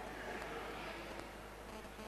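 Faint steady buzzing hum and hiss: background noise of an amplified hall, with no words.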